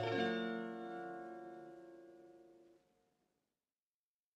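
Final plucked chord of a fado accompaniment on Portuguese guitar and classical guitar, struck just as the singing ends and ringing out as it fades; the recording cuts off to silence a little under three seconds in.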